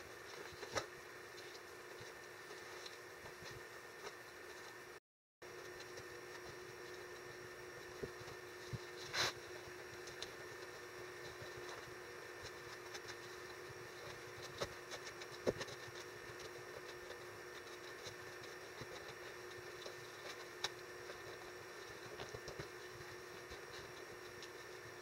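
Faint steady hum of room noise, with a few sharp soft taps and light scrapes from a wooden stir stick working wet joint-compound 'monster mud' over a newspaper shell.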